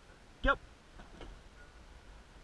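A man saying "yep" once, short and clear, about half a second in; otherwise only faint low background noise.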